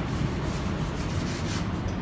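A steady rubbing, scraping noise without any clear strokes or knocks.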